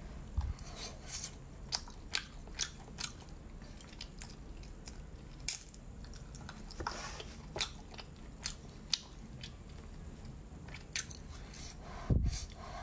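A person chewing a mouthful of saucy braised pork, with short, sharp mouth clicks and smacks at irregular intervals.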